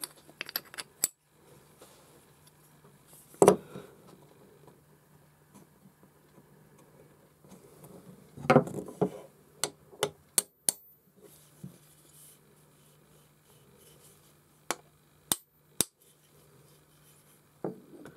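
Scattered sharp clicks and knocks of a wooden Japanese block plane being handled as its steel blade and chip breaker are refitted into the wooden body. A few come close together near the start, in the middle and towards the end.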